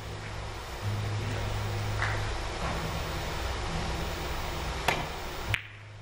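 Three-cushion billiard shot: a sharp click of the cue tip striking the cue ball about five seconds in, then half a second later a second, quieter click of ball hitting ball, over a low steady hum.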